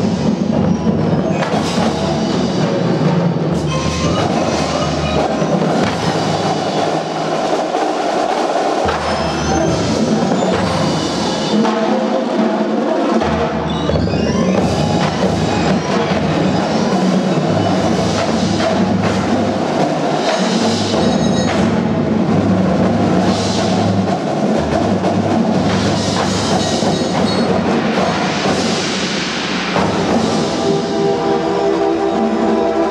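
Marching band playing a loud, continuous passage: brass over marching drums and other percussion.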